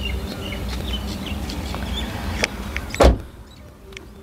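Small birds chirping over a steady low outdoor rumble, then a car door of a Volkswagen Polo shuts with one loud thud about three seconds in.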